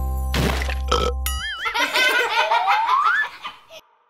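A children's song ends on a held chord with two sharp drum hits. Cartoon characters then laugh over a rising glide for about two seconds, fading out near the end.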